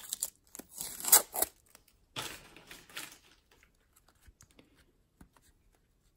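Masking tape being picked at and peeled off plastic card top-loaders, with crinkling and light taps of the stiff plastic. A few short rasping bursts in the first three seconds, then only faint small clicks of handling.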